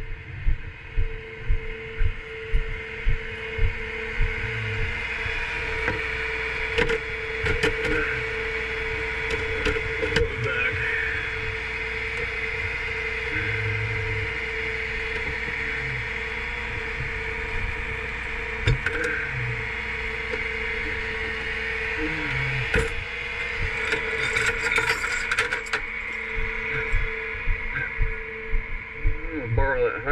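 Footsteps on pavement over the steady hum of an idling flatbed tow truck, with metal tow chains clinking and clanking as they are pulled from the truck's toolbox, then more footsteps near the end.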